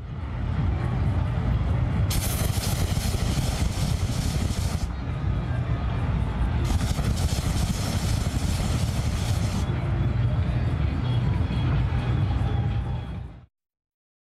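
Night crowd noise with music and voices over a deep, rumbling low end, broken by two long hissing whooshes of about three seconds each from propane flame effects firing. All of it cuts off suddenly near the end.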